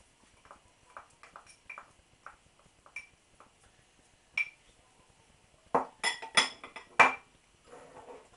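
A kitchen utensil knocking and clinking against a glass mixing bowl. There are scattered light clicks, one sharper ringing clink about four seconds in, then a quick run of louder clinks and knocks near the end.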